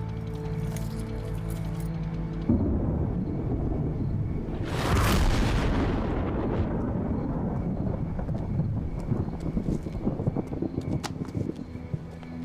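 Dramatic film score: held tones, then a deep rumbling boom comes in suddenly about two and a half seconds in, with a hissing whoosh that swells and fades around the middle before a low rumble carries on under scattered small clicks.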